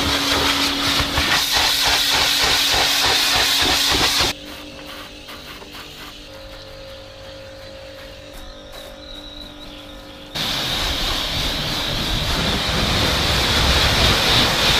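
Kärcher K5 pressure washer spraying a high-pressure water jet onto a car, a loud steady hiss with a steady hum under it. About four seconds in, the sound drops to a much quieter stretch. It comes back loud suddenly at about ten seconds.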